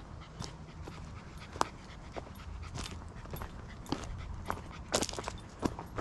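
A cocker spaniel panting in the heat, with a few faint short ticks scattered through.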